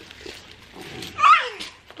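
A plastic zip bag of seashells crinkling quietly, then a young child's short high squeal that slides down in pitch, the loudest sound here, followed by a single click.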